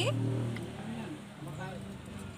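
A motor vehicle engine running steadily, strongest about a second in and then fading, with a faint voice over it.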